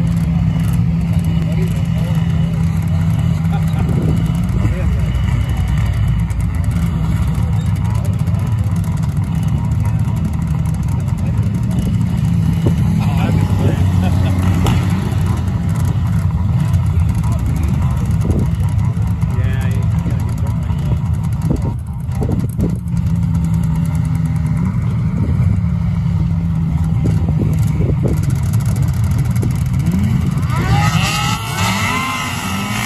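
Several snowmobile engines running close by, a steady low engine drone that swells and eases a little as the machines move.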